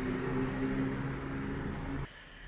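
A steady low hum with several even overtones, which cuts off abruptly at the end.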